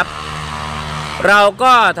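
Man speaking Thai, with a steady, even motor-like hum underneath that is heard on its own in a pause of about a second before the speech resumes.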